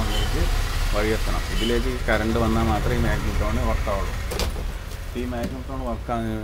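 A man talking over the steady low hum of an opened microwave oven running under test, with one sharp click about four and a half seconds in.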